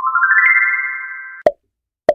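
Quiz-show sound effect marking the end of the countdown: a quick rising run of bright chime notes that ring on together and fade, then a short pop about a second and a half in.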